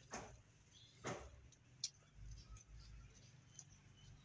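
Faint soft strokes of gloved hands scooping and smearing wet mud onto bricks, twice about a second apart, with a small click between them.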